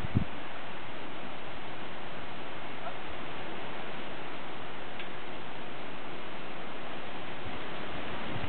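Steady, even outdoor background hiss with no distinct sound standing out, and a couple of short low thumps right at the start.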